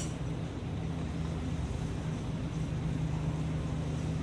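A brief clatter as grated jaggery is tipped from a bowl into a stainless steel saucepan, followed by a steady low machine hum.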